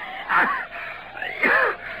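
A person's breathy laugh mixed with wheezing and coughing, as from sand blown into the throat. It comes as a short breathy burst and then a pitched, arching vocal sound shortly before the end.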